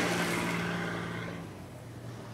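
A minivan's engine running as it drives off, fading steadily as it moves away.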